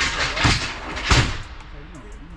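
Bundle of long metal pipes being pushed onto a cargo van's floor, with two loud clanks about two-thirds of a second apart in the first half, then quieter sliding.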